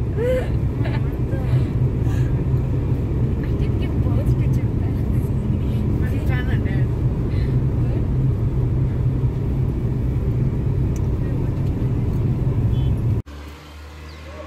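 Steady low road and engine noise inside the cabin of a moving car at highway speed, cutting off abruptly about thirteen seconds in.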